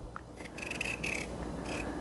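Paring knife peeling the skin off a russet potato: faint scraping and cutting strokes.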